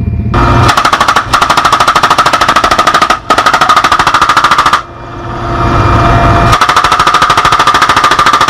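A PKM 7.62 mm machine gun fires long bursts from a helicopter's open door at about ten shots a second, with a brief break about three seconds in. It falls silent for about a second just before the middle, leaving the drone of the helicopter's rotor and engines, then fires again in another long burst.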